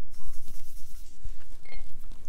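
A paintbrush mixing watercolor paint in a metal palette, a few faint taps and scrubs, over a steady low hum.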